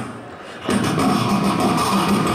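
Beatboxing through a handheld microphone and PA: after a short lull, a dense run of rapid mouth-percussion strokes starts about two-thirds of a second in, with a steady hummed tone held over it, a traditional Indian-style beat.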